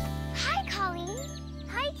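Children's TV background music: a jingling chime over a held low chord, with a child's excited exclamation about half a second in and a greeting near the end.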